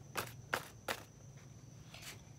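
Pine-needle sprig used as a paintbrush slapping and brushing against paper, three soft strikes in about the first second.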